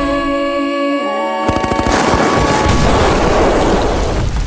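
A held music chord for about a second and a half, then suddenly a dense, rapid burst of automatic gunfire takes over, rattling on with impacts.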